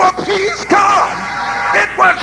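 A raised voice yelling short, drawn-out phrases in a sung preaching cadence over music with held, sustained chords.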